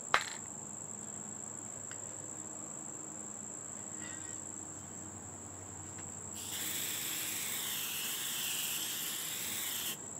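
Aerosol spray paint can hissing steadily for about three and a half seconds, starting a little past halfway, as the trigger of a 3D-printed press-fit handle holds the nozzle down. A sharp click comes just after the start.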